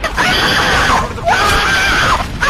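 A person screaming loudly: two long, high-pitched screams with a short break between them.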